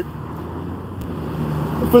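Low steady rumble of road traffic, slowly growing louder through the pause.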